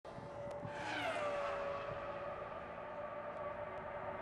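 Formula One car's V10 engine at high revs, its pitch falling sharply about a second in and then holding a steady high note.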